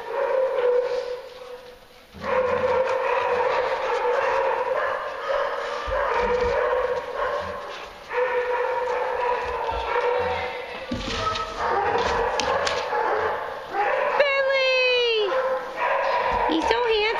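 Several dogs barking, yipping and whining together, with sharp barks in the middle and a long, falling whine near the end.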